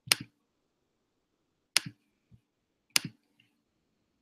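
Sharp clicks, three of them a little over a second apart, each a quick double click with a dull knock just after it.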